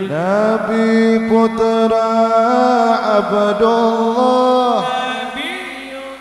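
A solo voice singing a slow, ornamented sholawat chant unaccompanied, holding long notes that step and bend in pitch, then dying away about five seconds in.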